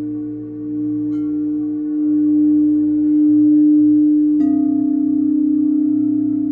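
Singing bowl ringing with a steady low tone that slowly swells. A faint tap comes about a second in and a sharp strike about four seconds in, after which the tone sits slightly lower and wavers.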